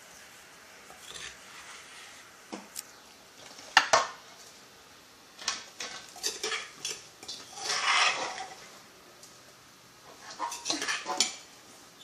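A metal spoon scraping and clinking against an earthenware mortar and a stainless steel bowl as pounded herb paste is scooped out onto raw chicken. There are several short scrapes and knocks, the sharpest knock about four seconds in and a longer scrape about eight seconds in.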